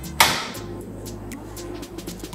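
Portable gas stove being lit under a saucepan: a sudden whoosh about a fifth of a second in as the gas catches, fading within half a second, over soft background music.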